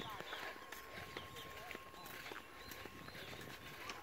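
Faint outdoor background of distant voices, with a few soft footsteps on a dirt path and a thin steady high tone underneath.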